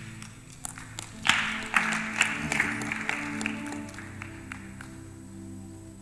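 Background music holding sustained chords, with a burst of congregation applause that starts about a second in and dies away by about the middle.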